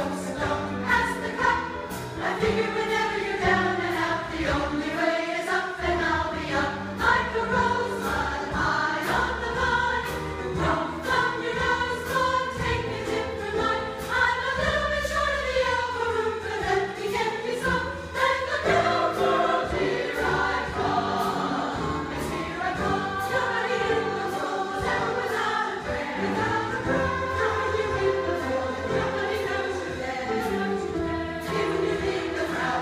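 Women's choir singing a song together in parts, the melody moving and changing notes without a break.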